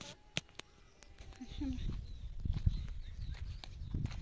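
Low rumbling handling noise on a phone's microphone as it is swung around, building up about a second and a half in, with a few sharp clicks near the start.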